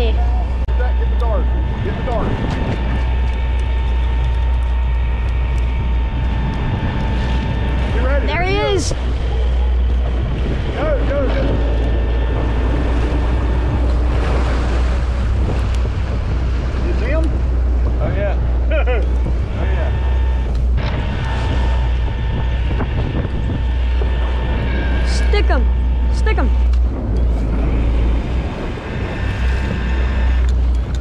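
Electric fishing reel winding in a heavy fish from deep water, its motor giving a steady thin whine over a loud low rumble of boat engine and wind on the microphone.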